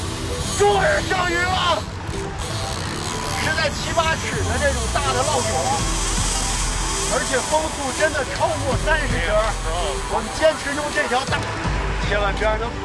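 Voices calling out over steady wind and sea noise, with background music underneath.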